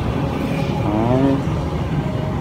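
Steady low outdoor rumble, wind buffeting the microphone mixed with road traffic, with a brief voice about a second in.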